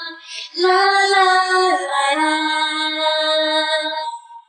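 A solo female pop voice singing with no accompaniment. It takes a quick breath, then sings long held notes, stepping down in pitch just before two seconds in.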